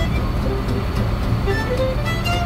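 A 1937 Terraplane pickup's six-cylinder engine and road noise while cruising on a highway: a steady low rumble, heard from inside the cab. Fiddle music plays faintly over it.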